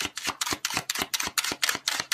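A deck of oracle cards being shuffled by hand: a quick, even run of card clicks, about seven a second.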